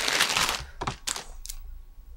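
A thin plastic package crinkling as a hair bundle is handled, then three sharp clicks or knocks about a second in.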